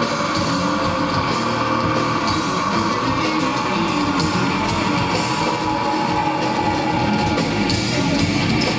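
Death metal played live by a full band: heavily distorted electric guitars over a drum kit with frequent cymbal hits, loud and unbroken, heard from within the crowd.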